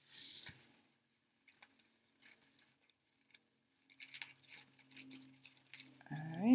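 Faint sounds of scissors cutting a paper napkin and the paper being handled: a soft rustle at the start, then scattered light snips and clicks, more of them in the last two seconds. Between them it is near silence, with a faint steady hum.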